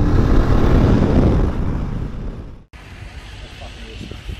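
Wind rush and engine noise from a BMW touring motorcycle at road speed, picked up by a camera mounted on the bike. The noise fades over a second or so, then cuts off suddenly to a much quieter open-air background.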